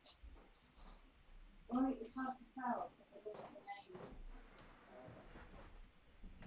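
Faint, distant voice speaking a few words about two seconds in, with small clicks and rustles around it in a small room.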